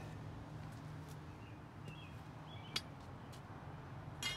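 Quiet outdoor ambience: a steady low hum, a few faint bird chirps in the second half, and a single sharp click about three seconds in.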